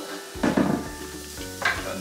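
Diced onion and garlic sizzling in oil in a frying pan, with a knock and clatter of kitchenware about half a second in.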